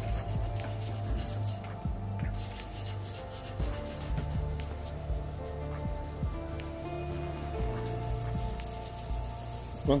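Calm background music of sustained chords that change pitch twice, under rubbing and rustling from a handheld microphone being carried around.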